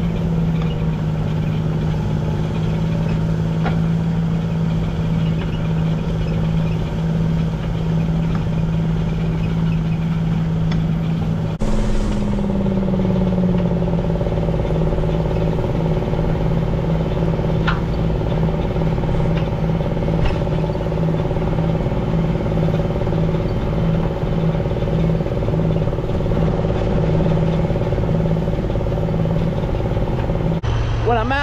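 Tractor diesel engine running steadily while pulling an eight-bottom moldboard plow through the soil, with the rush of dirt turning over the plow bottoms; the plow is a light load, so the engine is not working as hard as when subsoiling. The engine's pitch dips slightly near the start and again after a sudden break about twelve seconds in.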